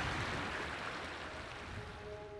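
Small stream's water running over a gravel and rock bed, a steady rushing that fades gradually.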